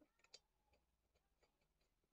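Near silence with a few faint clicks and ticks of small metal and plastic parts being handled on a grass cutter, a small cluster just after the start and scattered single ticks after.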